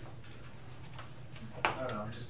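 Steady low room hum with a few faint clicks, then a voice starting abruptly near the end.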